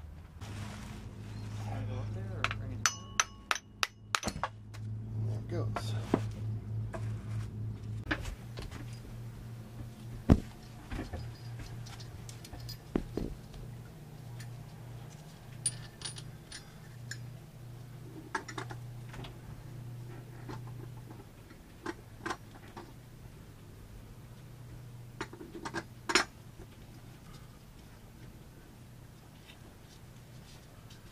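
Scattered metallic clinks and taps of hand tools and alternator parts being handled, with a quick run of clicks about three seconds in. Under them runs a steady low hum that fades about two-thirds of the way through.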